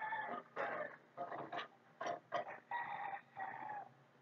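A string of about seven short animal calls, each well under a second long.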